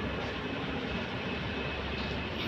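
Volvo A40G articulated dump truck's diesel engine running steadily as the truck drives away at a distance, a low rumble with no sharp events.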